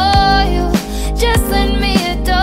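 Recorded pop song playing, with a held melody line over a steady beat and a deep kick drum about every two-thirds of a second.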